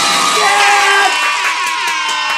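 A crowd cheering and whooping, many voices at once, with a man's long "yeah!" shout over it.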